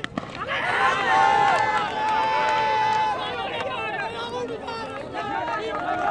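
One sharp knock of bat on cork ball right at the start, then several men shouting at once, one voice holding a long call for about two seconds.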